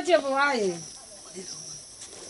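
A voice speaking a short phrase that falls in pitch and trails off within the first second, then a quiet stretch with only faint voice fragments over a thin, steady high hiss.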